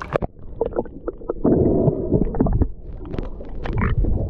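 Water sloshing, splashing and gurgling around a camera held at the water's surface under a dock, with irregular splashes and a louder spell of bubbling about a second and a half in.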